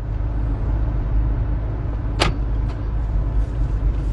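Car driving, heard from inside the cabin: a steady low rumble of engine and road noise, with one short sharp click about two seconds in.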